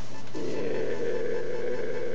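A man's drawn-out "yeah", held long at an even pitch, starting about a third of a second in. A steady low electrical hum runs underneath.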